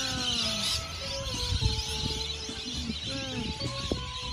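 A large flock of birds calling overhead: many overlapping squealing calls that glide in pitch, over a low rumble.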